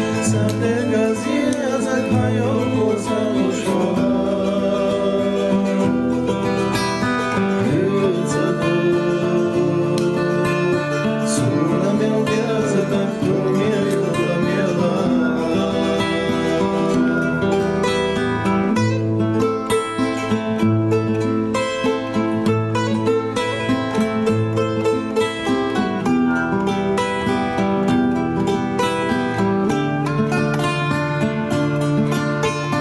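Music from a Chechen song, a plucked-string accompaniment with a wavering melody line over it. The accompaniment grows more rhythmic and clipped in the second half.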